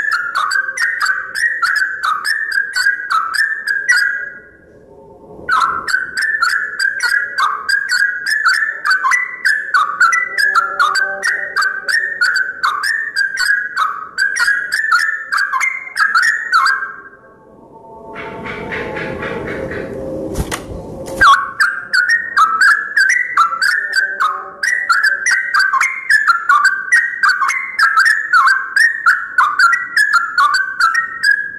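Yellow-vented bulbul singing: fast, bubbly phrases repeated over and over, breaking off briefly about four seconds in and again near the seventeen-second mark. Between the second and third runs of song comes a few seconds of loud rustling noise.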